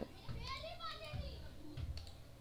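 Faint voices of children talking and playing in the background, with a single sharp click at the very start.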